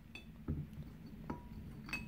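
Frozen bullace (small wild plums) dropped one by one into a glass swing-top bottle, landing with a few separate clinks. Some of the clinks ring briefly.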